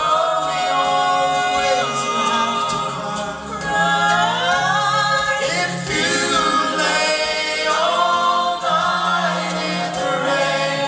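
A cappella vocal ensemble of men and women singing in close harmony into microphones, with no instruments. The voices hold chords, and their pitches slide from one chord to the next.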